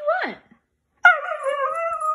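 A husky's drawn-out, wavering talking howl. It starts suddenly about a second in and slides up and down in pitch, slowly falling.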